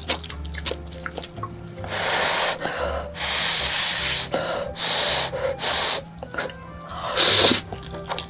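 Spicy instant noodles being slurped from chopsticks in several long, airy pulls of half a second to a second each, the loudest near the end.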